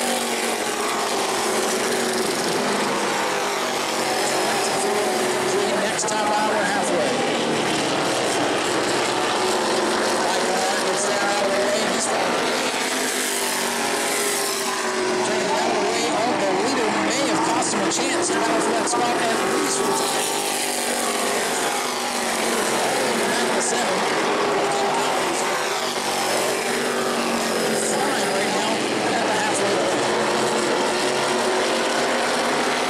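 Several E-Mod race cars' engines running hard at racing speed, a thick, continuous blend of engine notes that keep rising and falling in pitch as the cars pass and power through the corners.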